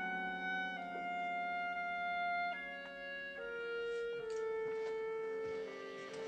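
Orchestral film score: a slow passage of sustained notes, with the held chord shifting to new pitches every second or so.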